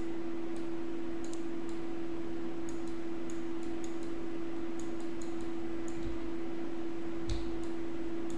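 Faint, irregular clicks of a computer mouse button and keyboard key, pressed and released stroke by stroke while drawing with the mouse, over a steady low hum.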